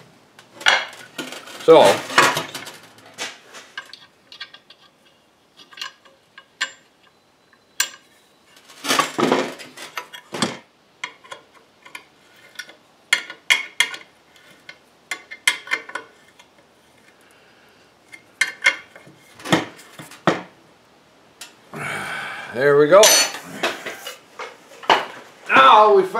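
Steel parts of a wrecker pulley head being handled and a nut on its pin turned with a combination wrench: irregular metal-on-metal clinks and clanks, with a scuffle of handling near the end.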